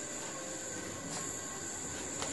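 A pause between spoken phrases: steady background hiss of a sermon recording, with a faint steady high-pitched whine.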